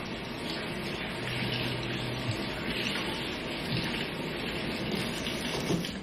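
Water running steadily from a kitchen tap.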